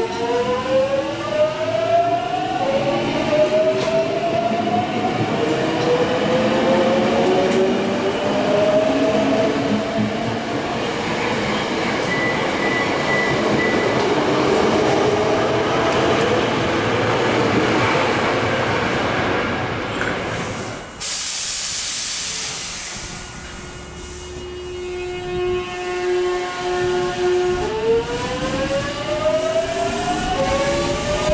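Hankyu 8300-series train's Toyo Denki GTO-VVVF inverter as the train accelerates away: several tones climb in pitch in steps over about ten seconds, then blend into the rumble of the passing cars. About 21 s in there is a sudden cut to another train whose inverter holds a steady tone, then starts climbing again as it pulls away near the end.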